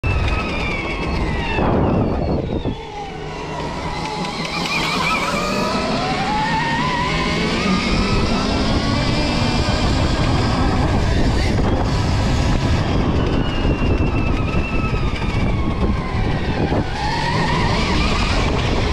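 Dirt bike engine running under throttle, its pitch rising and falling as the rider accelerates and eases off, with a brief letup about two seconds in.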